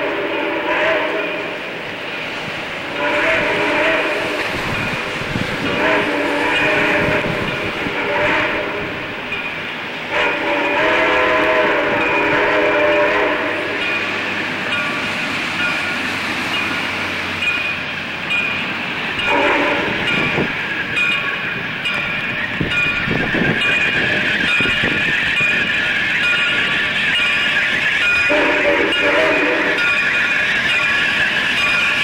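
Steam locomotive's chime whistle blowing a series of blasts, two long ones in the first half and shorter ones later, over the running noise of the approaching train.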